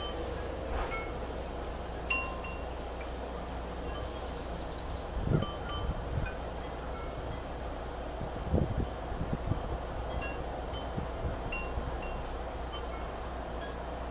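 Wind chimes tinkling irregularly, single short notes at different pitches, with a few low gusts of wind on the microphone about five and eight and a half seconds in.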